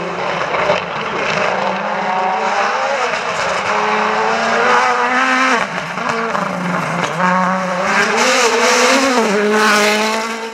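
Ford Fiesta WRC rally car's turbocharged four-cylinder engine at high revs, its pitch climbing and dropping through gearchanges and lifts, with sharp drops about five and a half and seven seconds in. It is loudest near the end as the car comes closest.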